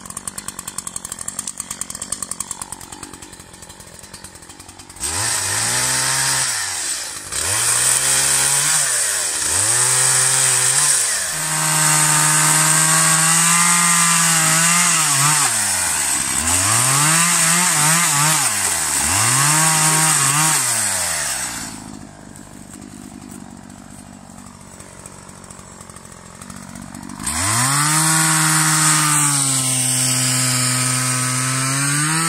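Two-stroke petrol chainsaw idling, then revved up and down repeatedly and held at full throttle while it cuts through a fallen tree's logs and branches. It drops back to idle for a few seconds near the end, then revs up again.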